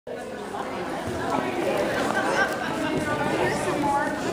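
Indistinct chatter of many people talking at once.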